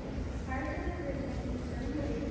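A school concert band playing, with short held notes from the wind instruments over a low rumble.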